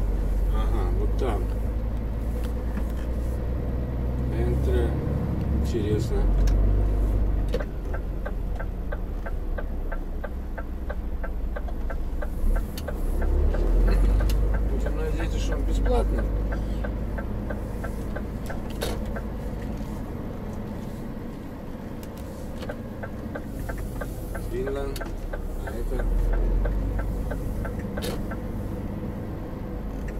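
Heard from inside the truck cab: the diesel engine runs at low speed while the truck manoeuvres slowly into a car park. The turn-signal relay ticks steadily, about three ticks a second, in two stretches, first near the middle and again near the end.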